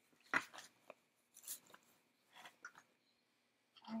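Faint rustling and small clicks of a stitching project and its materials being handled and put aside, with one sharper click about half a second in and a few softer rustles after it.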